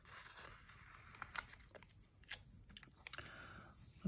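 Faint paper handling: pages of a sticker book being turned and a loose planner page being moved, heard as soft rustles and a scatter of small clicks.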